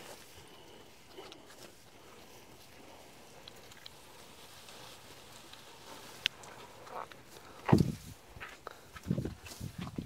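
Quiet rustling of grass being cut and gathered by hand, with a sharp click about six seconds in and a few louder rustles and knocks in the last three seconds.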